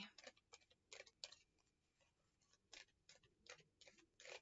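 Faint, scattered clicks and taps of a tarot deck being shuffled and handled, a few near the start and a quicker run near the end.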